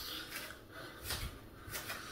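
A man breathing hard, several heavy breaths as he catches his breath after an exercise set taken to failure.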